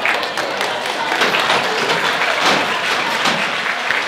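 Applause: many hands clapping, dense and steady.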